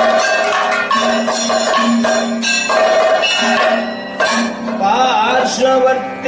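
Kathakali music: a steady drone under repeated percussion strikes, with a singing voice coming in with wavering, ornamented pitch about five seconds in.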